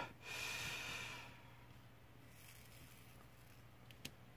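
A man's short breathy laugh, fading out within about a second and a half, then only faint room tone.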